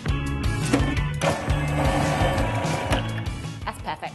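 A food processor runs for about two seconds in the middle, blending chillies, garlic and shallot with oil into a paste. Background music with a steady beat plays under it.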